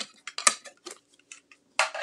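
Irregular light clicks and taps of acrylic die-cutting plates, a thin metal die and cardstock being handled and set down on a craft table. A brief rustling slide of paper comes near the end.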